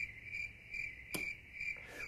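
Faint, high-pitched insect chirping, pulsing about four times a second, with a single short click a little past halfway.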